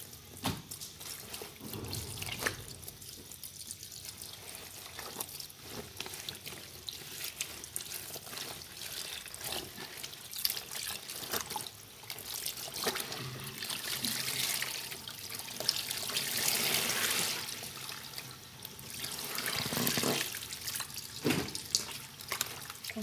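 Water running into a laundry tub while wet clothes are sloshed and squeezed by hand in the rinse water, with small splashes. The water grows louder in two stretches in the second half.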